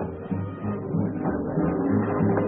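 Dance band music with a steady bass line, about three bass notes a second, under the band's higher instruments.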